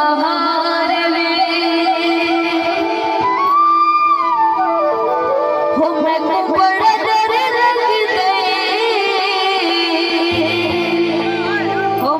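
Live Saraiki folk music: harmonium and bamboo flute carry a wavering melody over drums, with a voice singing. About four seconds in, a long held note slides down in pitch, and a low drone comes in near the end.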